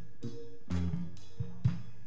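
Live church band playing an instrumental with drum kit and guitar: sustained low notes over a steady beat of about two drum hits a second.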